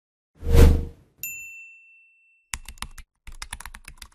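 Logo-animation sound effects: a short swelling whoosh, then a single bright ding that rings out for about a second, then a quick run of keyboard-typing clicks as the tagline text types itself out.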